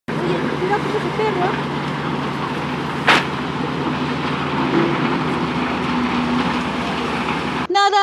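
Steady rushing noise from the swollen, flooding river at the bank, with a low steady engine drone underneath, likely heavy machinery. A single sharp knock comes about three seconds in.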